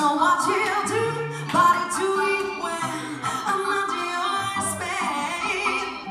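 A woman singing lead vocals over a live band, with bass notes running underneath.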